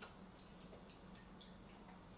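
Near silence: a low steady hum with faint scattered small clicks, the sharpest right at the start.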